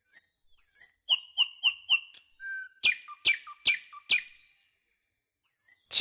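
Bird-like whistled chirps: a run of about four short high notes, then a louder run of about four notes, each sliding down in pitch.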